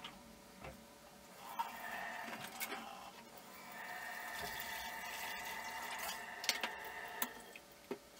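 Kitchen tap water running into a metal pot at the sink, in two spells, with a few sharp clinks of dishes near the end.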